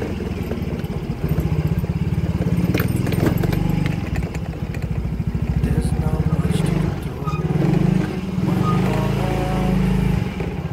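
Motorcycle engine running at low speed with a rapid pulsing beat, rising and easing off a few times with the throttle.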